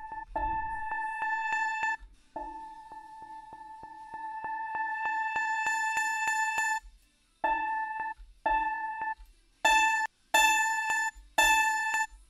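Sampled acoustic guitar note played through Ableton's Simpler sampler, looping with a grainy stutter of about five clicks a second, growing brighter as the filter cutoff is raised. In the last few seconds the note is struck again in five short hits.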